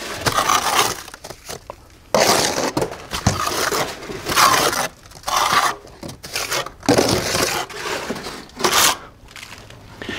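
Steel plastering trowel scraping wet stucco base coat off a hawk and pressing it into wire lath, in a run of rough scrapes about a second long each.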